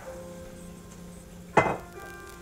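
A bottle set down on the kitchen counter with a single sharp knock about one and a half seconds in, over quiet background music.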